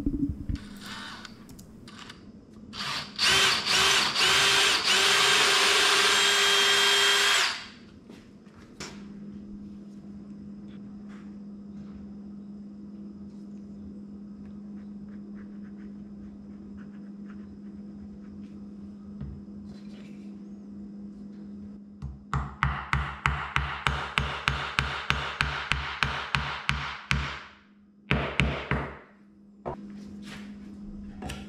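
Cordless drill boring a hole into a small wooden block, running steadily for about four and a half seconds with a steady whine. Later comes a fast, even run of strokes, about four a second for some five seconds, then a shorter run.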